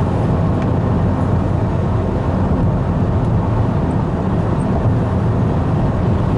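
Steady road noise of a car driving at highway speed, heard inside the cabin: tyres and engine running evenly.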